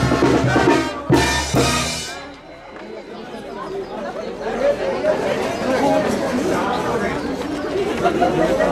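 A street brass band with sousaphone and drums playing the last bars of a tune, ending with a final loud hit about two seconds in; then crowd chatter.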